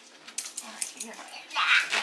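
A pet dog making a short, loud vocal sound about a second and a half in, after a few light clicks.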